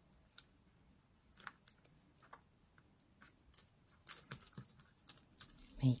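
Hands pressing a string Christmas tree down onto a paper card: faint, scattered light clicks and rustles of paper and card, growing busier in the last two seconds.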